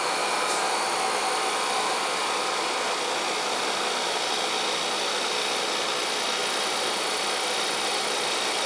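Vacuum pump of an oxygen plasma cleaner running steadily, pumping down the chamber while the door is held shut to seal. An even hiss with a few faint steady tones.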